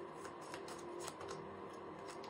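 A deck of tarot cards being shuffled by hand, a quick, soft run of card clicks and slides, with cards drawn off the deck near the end.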